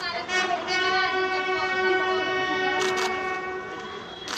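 Ceremonial brass horns holding several long notes together as a chord, the honour music played at a state funeral. A brief cluster of sharp clicks comes about three seconds in.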